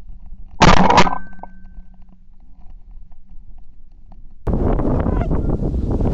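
A shotgun blast about half a second in, with a brief ringing tail, then a lull. From near the end, a flock of Canada geese honking over wind noise.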